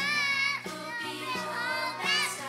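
A group of preschool children singing a Christmas song together into stage microphones, over an instrumental accompaniment with a steady beat.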